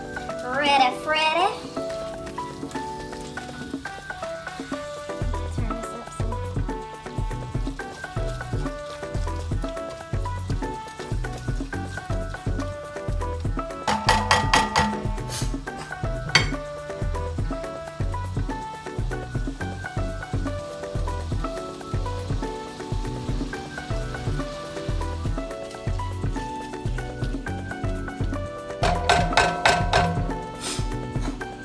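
Background music with a steady beat over ground beef sizzling as it browns in a cast-iron skillet, stirred with a spatula. A few clinks come about halfway through and again near the end.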